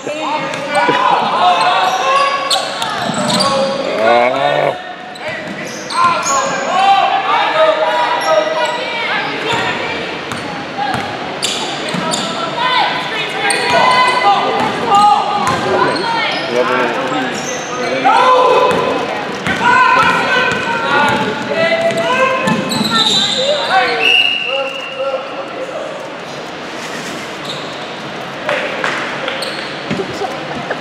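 A basketball bouncing on a hardwood gym floor as the players dribble and pass, with voices echoing through the large gym.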